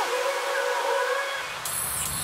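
A breakdown in electronic trap music: the beat and bass drop out, leaving a steady hiss of synth noise and a faint held tone. Deep bass creeps back in near the end.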